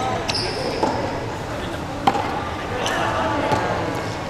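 Racket-sport rally: rackets striking the ball and the ball bouncing on a wooden hall floor, several sharp hits at uneven intervals with the loudest about halfway through. Players' voices run underneath.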